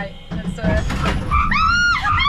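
Turbocharged car engine pulling hard from a standing start, heard from inside the cabin, with a passenger shrieking excitedly over it in the last half second.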